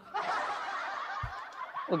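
A soft, breathy snicker from a man, slowly fading away.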